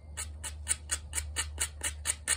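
Sandpaper rubbed by hand in quick back-and-forth strokes on a small engine's valve seat, about seven scratches a second, lightly cleaning and resurfacing the seat.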